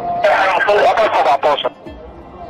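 A man's voice over a two-way police radio, a loud burst from about a quarter second in that breaks off after about a second and a half, with background music underneath.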